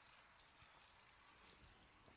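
Near silence: only a faint, steady hiss.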